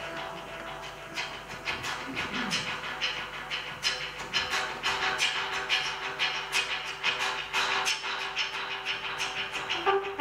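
Live trumpet-and-guitar jazz with electronic elements: steady held tones under a busy clicking percussive rhythm that comes in about a second in.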